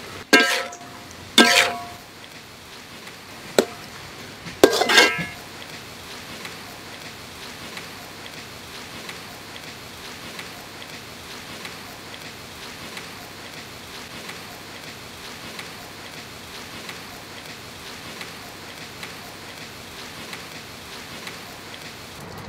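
Food sizzling steadily in a wok, with two sharp ringing clanks of a metal spatula against the wok in the first two seconds.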